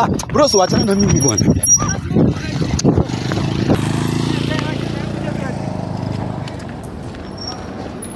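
Raised voices for the first three seconds, then a motorcycle engine running steadily and fading away over the next few seconds.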